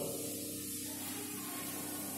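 Steady background hiss with a faint, constant low hum underneath; no other event.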